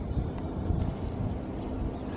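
Low, uneven outdoor rumble on the microphone, with no distinct event standing out.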